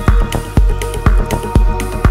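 Instrumental deep house music: a steady four-on-the-floor kick drum at about two beats a second, with hi-hats and sustained synth tones.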